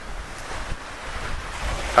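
Sea surf washing onto a sandy beach, with wind buffeting the microphone as a low rumble.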